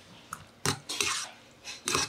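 Metal chopsticks clinking against a stainless steel bowl while cold noodles are mixed, a few sharp, irregular clinks.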